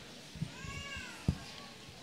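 A short high-pitched call, about two-thirds of a second long, that rises and then falls in pitch, followed by a dull thump.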